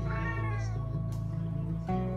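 A long-haired cat meowing once, a short call that rises then falls in pitch, over background music.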